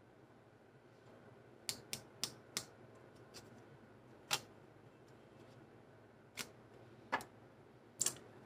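A deck of tarot cards being handled and a card pulled out: after a second and a half of quiet, about eight irregular sharp card snaps and taps.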